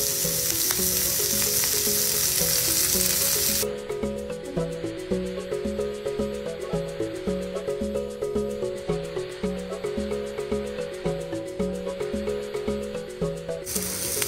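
Green beans and carrot sticks sizzling in hot oil in a frying pan, loud for about the first three and a half seconds and then cutting off abruptly. Background music with a repeating bass line runs underneath throughout.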